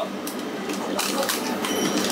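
Clicks and rustling of packaged goods being handled over a plastic shopping basket, against the hum of a convenience store, with a faint high beep near the end.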